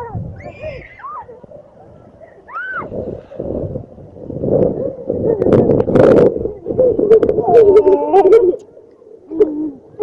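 Children's voices calling out with rising-and-falling hoots, then laughing and shouting at a swimming pool. Water splashes come through the louder middle stretch, with a run of sharp splashes near the end.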